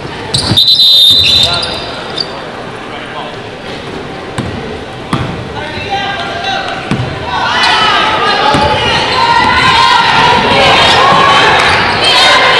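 Basketball game sound on a hardwood court: the ball bouncing with scattered thuds, and a brief shrill squeal about half a second in during the scramble under the basket. From about seven seconds in, many voices shout and call out over the play.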